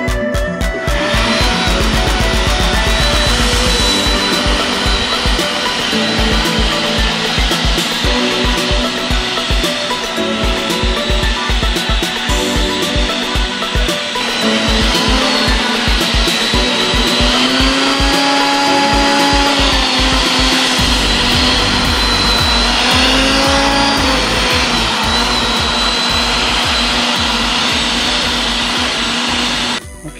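Background music with a steady beat over a corded electric tiller cultivator running continuously, its motor giving a steady whirring whine as the tines churn the soil.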